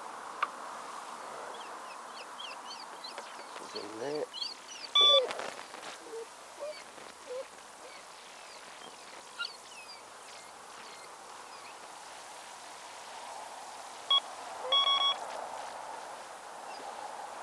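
Electronic bite alarm on the rod pod giving short beeps about five seconds in and again twice near the end as the rod is set and the line tightened. Small birds chirp throughout.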